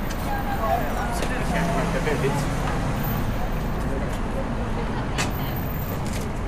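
City street ambience: a steady rumble of traffic with passersby talking, and a sharp click about five seconds in.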